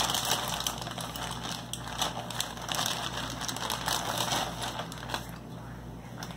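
Crinkling and crackling of snack packaging being handled, a dense run of small irregular crackles that dies down about five seconds in.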